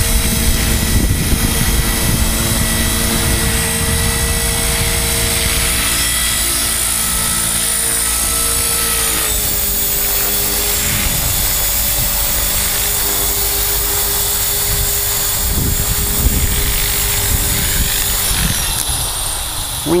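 Electric Chaos 450 PRO radio-controlled helicopter in flight: a steady whine from the motor and rotor, whose pitch drops a step about halfway through.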